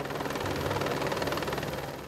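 Helicopter rotor and engine noise swelling up and then easing off, with a fast, even beat from the blades.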